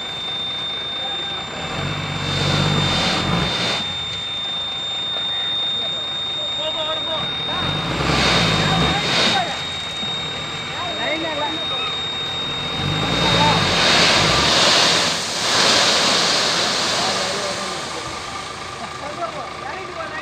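Dump truck's diesel engine revving up three times and settling back between, as the truck creeps forward with its tipper body raised and gravel pouring off the bed.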